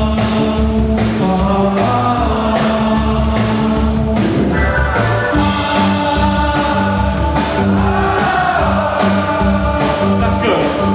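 Live band playing a funk groove: held Hammond organ chords over electric bass and drums keeping a steady beat, with a man singing into a microphone over the top.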